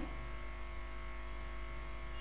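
A steady electrical hum with a faint buzz, even in level throughout. No pestle strikes stand out.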